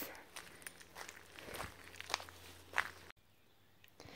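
Footsteps crunching lightly and irregularly on a gravel path. They stop abruptly about three seconds in.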